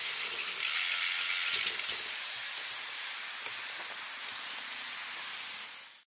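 Steady hiss of wind and street traffic on a moving camera's microphone, swelling for about a second starting about half a second in, then easing and fading out at the end.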